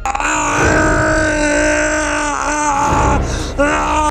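A man's long, drawn-out yell held on one pitch for about two seconds, then two shorter yells near the end.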